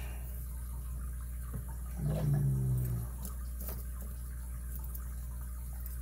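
Steel lock picks being taken from a rubber pick mat and handled, giving a few faint light clicks over a steady low hum.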